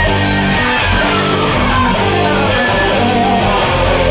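Electric guitar playing a rock lead over a band backing: a held high note slides down into a falling run of notes.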